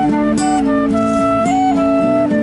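Concert flute playing a melody in held notes over a strummed acoustic guitar.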